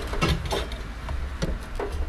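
A few light knocks and clunks of a metal fuel pump hanger being twisted and worked back down into the fuel tank opening.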